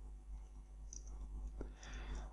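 Faint keystrokes on a computer keyboard, a few scattered clicks over a low steady hum.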